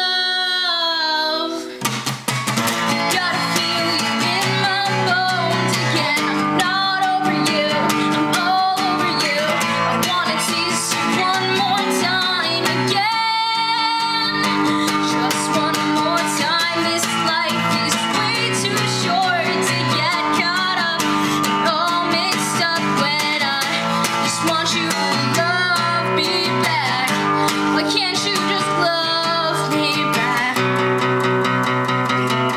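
A woman singing to her own strummed acoustic guitar, the voice holding and sliding between notes over steady chords, with a brief drop in level about two seconds in.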